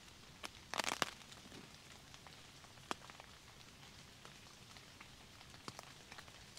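Light rain falling on the tent's ripstop polyester roof overhead: a faint steady hiss with scattered single drops tapping. A short cluster of sharper clicks comes about a second in.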